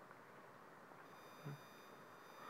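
Near silence: faint steady hiss of room tone. About halfway through, faint steady high-pitched electronic tones come in, and there is one brief soft low knock near the end.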